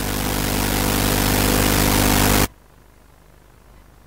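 A steady hiss with a low, even hum beneath it, growing gradually louder and then cutting off abruptly about two and a half seconds in, leaving only faint hiss.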